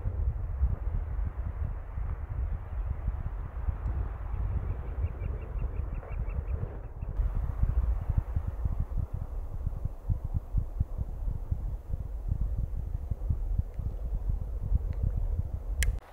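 Wind buffeting the microphone: an uneven, gusty low rumble, with a faint rapid ticking about five seconds in.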